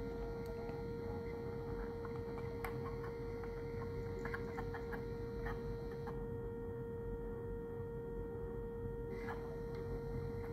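3D-printed miniature Whelen Hornet siren sounding a steady tone during its alert cycle, while its horn head rotates. A few faint clicks sound under it.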